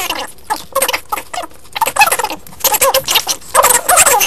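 Fast-forwarded audio of Pringles crisps being eaten: squeaky, high-pitched sped-up voices mixed with quick crunching.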